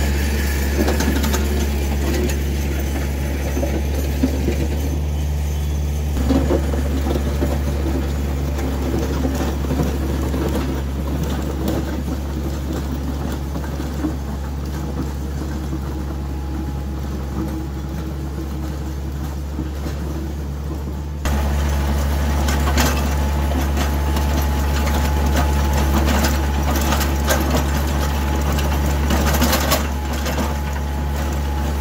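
Kioti compact diesel tractor running steadily under load while dragging a Woods box blade, teeth raised, through gravel and dirt, with rough scraping over the engine's hum. The sound jumps louder and closer at about 21 seconds in.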